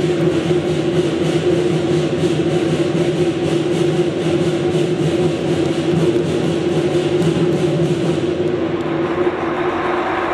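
Lion dance percussion band playing a drum and clashing cymbals in a fast, steady beat, with a steady ringing tone underneath. The cymbal strikes drop out about eight and a half seconds in.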